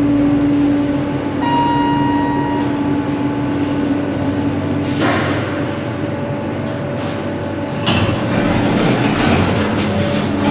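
ThyssenKrupp passenger elevator: a steady machine hum, a high electronic tone lasting about a second and a half, then the stainless-steel sliding doors moving, with a rush of noise about five seconds in and clicks and knocks near the end.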